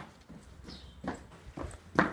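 Footsteps on a concrete path, a handful of separate steps from someone walking briskly.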